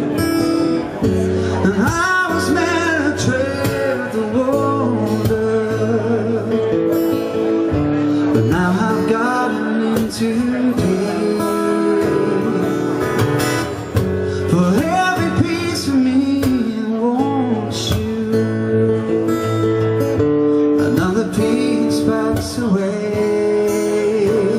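A man singing live to his own strummed acoustic guitar. The guitar chords run on steadily while the sung lines come in every few seconds with short gaps between them.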